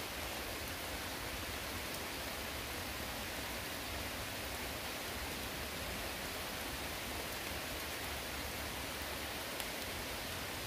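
Steady rain falling on forest vegetation: an even, unbroken hiss.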